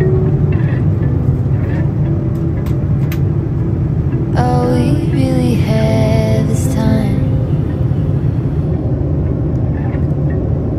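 Steady low rumble of an airliner's cabin in cruise flight, the engines and airflow droning evenly. A voice speaks briefly through the middle.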